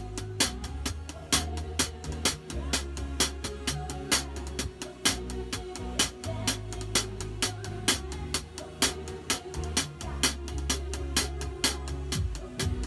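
Drum kit played with sticks in a steady beat of snare, tom and cymbal strikes, about four a second, over musical accompaniment with a bass line that changes note every couple of seconds.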